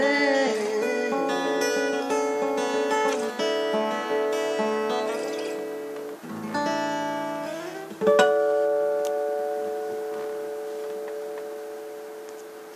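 Steel-string acoustic guitar playing the closing bars: a run of picked notes, then a last strummed chord about eight seconds in that rings out and slowly fades.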